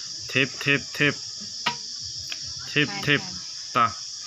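A steady, high-pitched chorus of insects runs throughout. Short voiced calls from people break in several times, and there are a couple of sharp clicks in the middle.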